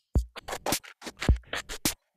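Electronic kick and snare drum pattern playing back from Ableton Live. Short dry hits come at about four a second, unevenly spaced, and a few carry a deep kick thump.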